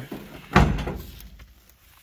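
A single heavy thump about half a second in, fading out over the next second: the steel door of an old Chevy pickup cab being worked open or shut.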